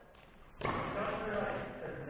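A brief hush, then a single sharp knock about half a second in, followed by indistinct talking voices in a large echoing gym.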